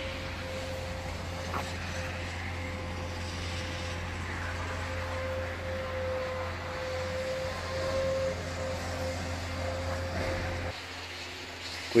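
Steady low machine hum with a faint held whine over it; the whine and part of the hum stop shortly before the end.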